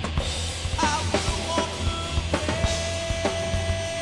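Live rock band playing: drum kit hits over electric bass and guitar, with a long steady high note held through the second half.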